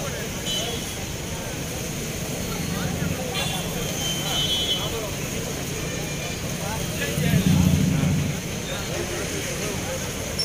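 Roadside street ambience: several people talking at once over passing traffic, with short vehicle horn toots. A louder low rumble, a vehicle passing close, comes about seven seconds in.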